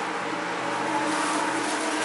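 Steady drone of a car ferry's engines and machinery heard inside the ship: an even hum with several held tones over a noisy rush.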